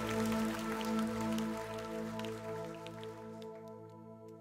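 The band's instrumental ending, with a bowed cello among the instruments: a few held notes fading steadily away, with light scattered ticks above them.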